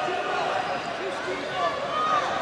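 Indoor arena crowd noise: many distant voices talking and shouting over one another.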